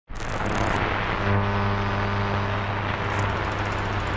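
A steady low rumble with a humming tone that joins about a second in and fades before the end.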